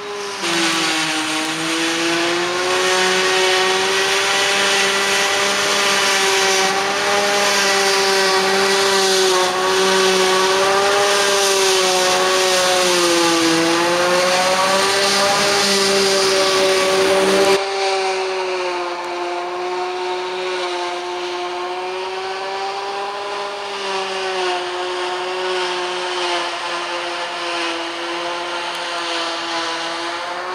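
Claas Jaguar 840 forage harvester working a grass swath: a steady high machine whine with a rushing hiss, dipping in pitch a few times as the chopped grass goes through. About two-thirds of the way in the sound changes abruptly to a quieter version of the same whine, with less hiss.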